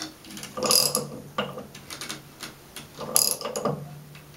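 Air-cooled Volkswagen flat-four engine being turned over by hand toward top dead center, giving mechanical clicking and rattling in two short bursts about two and a half seconds apart, with a few lighter clicks between.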